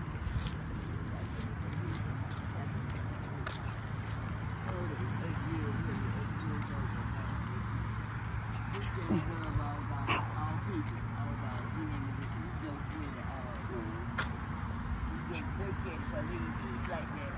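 Indistinct voices talking at a distance over a steady low hum, with a few short clicks.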